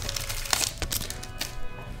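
Car alarm sounding in the background as a set of steady electronic tones. Over it come a few crackles from a foil booster pack wrapper and the cards being handled in the first second.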